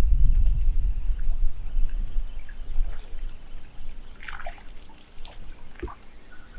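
Low rumble of wind buffeting the microphone outdoors, coming in suddenly and loudest at the start, then easing off, with a few faint short sounds near the end.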